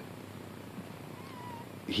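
A house cat purring softly close to the microphone.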